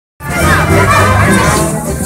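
Dense street crowd: many voices talking and calling out at once, with music playing underneath. The sound cuts in abruptly just after the start.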